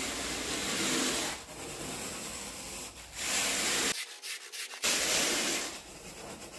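Carpet rake dragged across berber carpet in long, scratchy strokes, about four of them, with a brief silent break about four seconds in.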